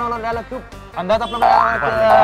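A comic boing sound effect: a springy pitch rising twice in quick succession about a second and a half in, over background music.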